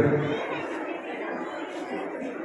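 A man's voice over a microphone trails off on one word, followed by low background chatter from the audience while he pauses.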